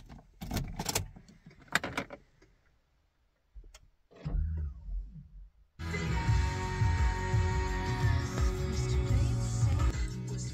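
A few clicks from the ignition key being turned, then about six seconds in the car radio suddenly comes on, playing music through the cabin speakers. The radio is receiving through the newly fitted whip antenna.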